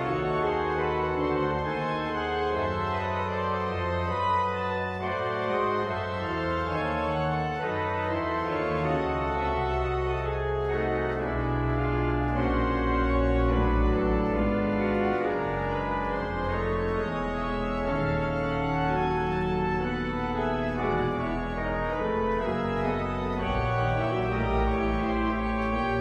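Church pipe organ playing full sustained chords over deep held bass notes, the harmonies changing every second or so without a break.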